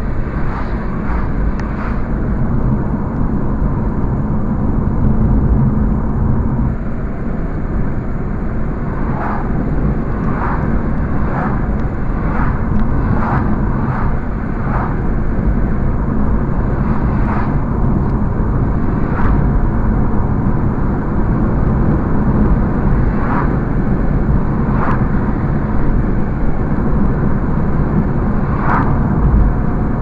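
Car driving at road speed, heard from inside the cabin: a steady low engine and tyre rumble. Short ticks sound over it now and then, several in quick succession about ten seconds in.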